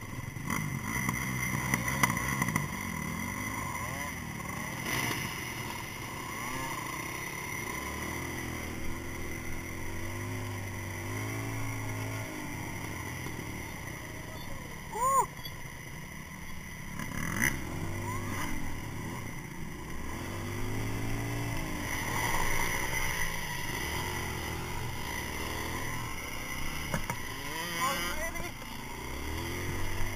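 Dirt bike engine running under way on a muddy trail, its pitch rising and falling again and again with the throttle and gear changes, heard close up from the bike being ridden. A short sharp loud knock about halfway through.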